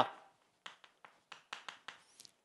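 Chalk writing on a chalkboard: a quick run of about eight short, faint taps and strokes as a word is written.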